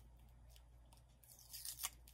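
Faint crinkling of clear plastic wrapping around a set of figurines being turned in the hands, with a few short crackles in the second half.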